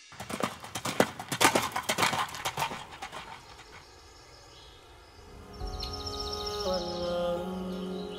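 Horse's hooves clopping on a road in a quick, irregular run of sharp knocks that fades out about three seconds in. Background music with long held notes comes in about five seconds in.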